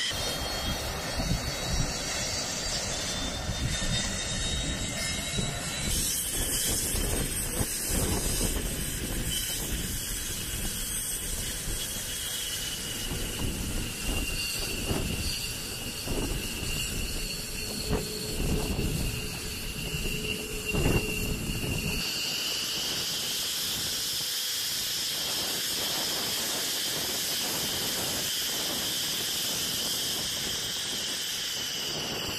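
F-15C Eagle jet engines running on the ground: a steady high turbine whine with hiss over a low rumble. About two-thirds of the way through the rumble drops away and the whine rises slightly.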